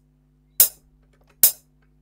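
Two sharp clicks of a recording software's metronome, a little under a second apart, counting in before a keyboard part is recorded. A faint low hum sits underneath.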